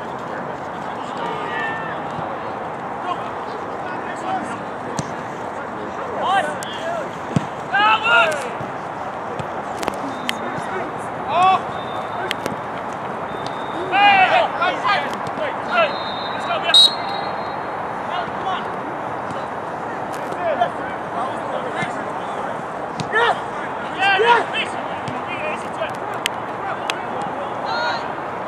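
Players shouting and calling out on an outdoor soccer pitch during open play: short, loud calls every few seconds, the loudest around the middle, over a steady background hiss.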